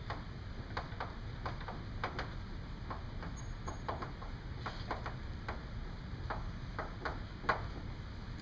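Chalk writing on a blackboard: irregular short taps and scratches of the chalk as words are written, one louder tap near the end, over a steady low room hum.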